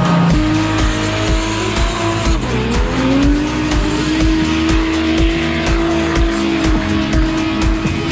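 Drift car engine held high in the revs with tyres squealing, heard over background music with a steady beat. About two and a half seconds in, the engine note dips and then climbs back up.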